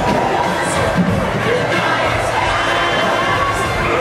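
A large group of young voices shouting and hooting together, ape-like calls from a stage ensemble over a musical accompaniment.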